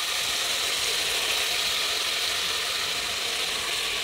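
Kefir-marinated chicken breast pieces sizzling steadily in hot oil in a pot.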